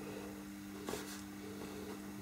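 Faint scratching of a pastel pencil on paper, over a steady low hum, with one faint tick about a second in.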